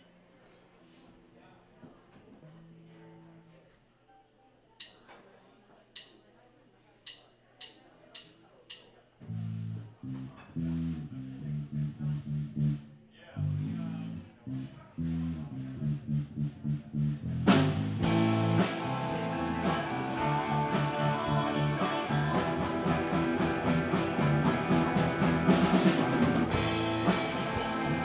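A live rock band starting a song. Faint amp hum and a few sharp clicks come first, then a bass guitar enters alone about nine seconds in with a repeating riff. The full band comes in loudly about seventeen seconds in, with drum kit and electric guitars.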